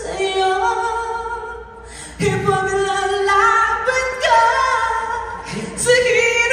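A performer singing live into a handheld microphone through the stage sound system, holding long notes with a short break about two seconds in.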